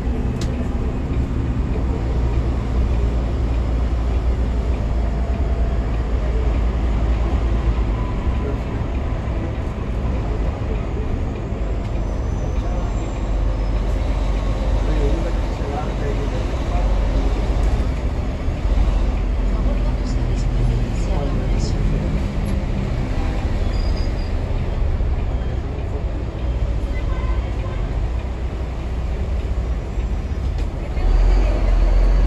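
Cabin noise of a Transmilenio BRT bus on the move: a steady low engine and road rumble.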